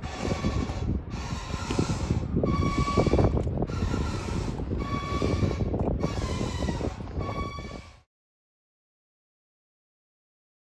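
Outdoor harbour sound dominated by wind on the microphone, with a faint higher tone recurring about once a second over it; it cuts off abruptly to silence about eight seconds in.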